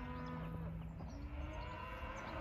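Cow mooing: one long low call that rises in pitch about a second in and then holds.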